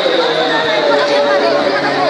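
A packed crowd of people talking all at once at close range: many overlapping voices, steady and loud, with no single voice standing out.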